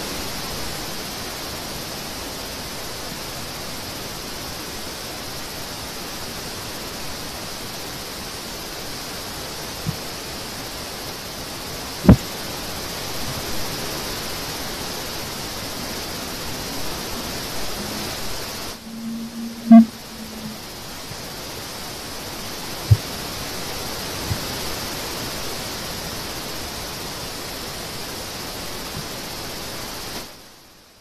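Steady hiss of an electric pedestal fan running close to a computer microphone. It is broken by a few sharp clicks and drops out for about two seconds past the middle.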